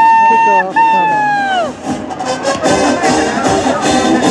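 A school pep band in the stands playing, led by a loud held high note that is broken once and falls away after about two seconds. The band plays on with crowd chatter behind it.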